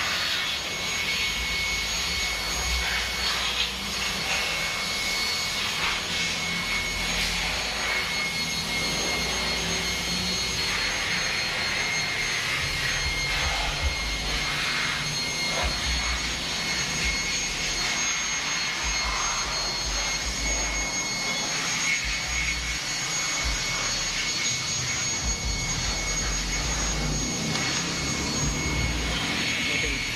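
Steady machine noise from the workshop: a rushing air sound with a high, steady whine over an uneven low rumble.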